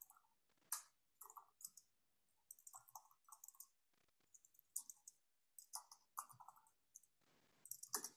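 Faint typing on a computer keyboard: irregular runs of key clicks with short pauses between them.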